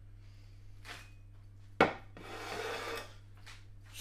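Kitchenware being moved about on the worktop: a single sharp knock a little under two seconds in, as of the steel colander being set down, followed by about a second of scraping and rubbing.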